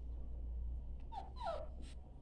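A puppy whimpering: two short whines that fall in pitch, about a second in, with a fainter third just after, as it hesitates at the top of a staircase it is afraid to go down.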